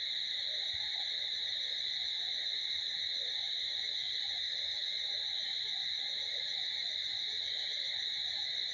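Steady high-pitched chorus of insects, a continuous drone that holds unchanged without a break.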